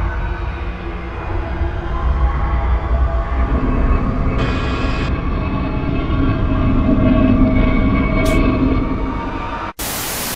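Heavy low rumbling drone with layered sustained tones, an eerie analog-horror soundscape. It cuts out suddenly near the end, into a short burst of harsh static.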